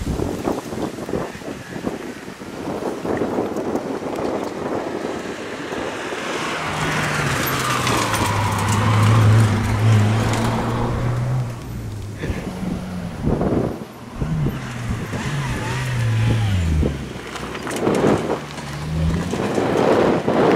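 Mazda Demio rally car's engine at full throttle on a tarmac stage: the engine note comes up about six seconds in and is loudest as the car passes, then rises and falls several times through gear changes before the driver lifts off near the end.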